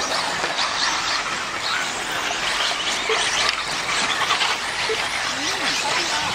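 Radio-controlled 4WD off-road buggies racing on a dirt track: a steady, high-pitched whir from several small motors, rising and falling in pitch as the cars speed up and slow down.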